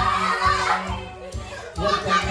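Karaoke backing track with a heavy beat, about two beats a second, and a group of voices singing and shouting along. The music drops out briefly about a second in and comes back with the beat near the end.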